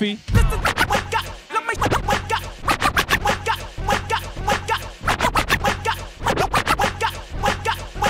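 Turntable scratching: a DJ cutting a record back and forth in quick rhythmic strokes over a hip-hop beat, with the bass dropping out briefly several times.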